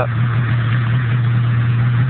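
Snowmobile engine idling steadily, a constant low hum that holds one pitch.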